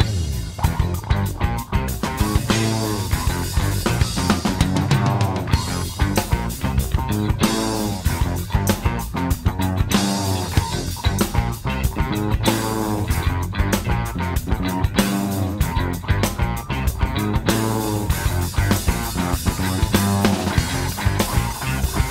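Instrumental passage of a funk-rock band recording: electric guitar playing over a bass guitar line and a steady drum-kit beat, with no vocals.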